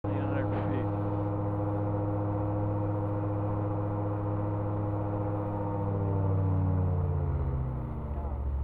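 SeaRey amphibian's engine and pusher propeller droning steadily, heard from inside the open-cockpit cabin. From about six seconds in, the pitch sinks slowly as the aircraft pitches up into the wingover climb and loses airspeed.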